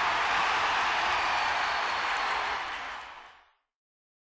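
Crowd applause and cheering, a steady, even wash of sound that fades out about three seconds in.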